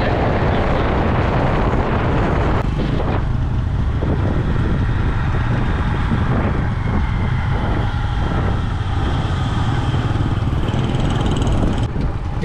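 Motorcycle engines running on the move, with steady wind rumble on the microphone.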